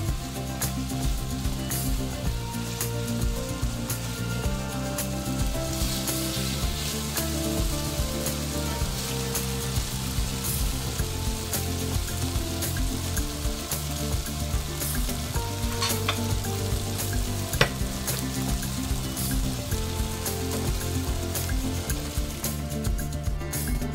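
Chicken pieces sizzling as they fry in a thick yogurt-and-curry sauce in a nonstick frying pan, stirred with a wooden spatula; the sauce is cooking down onto the meat. A couple of sharp knocks of the utensil against the pan come in the later part.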